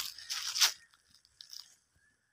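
Two short bursts of dry crunching and rustling close to the microphone in the first second, then a couple of faint ticks.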